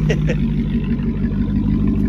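A vehicle engine idling, a steady low even hum.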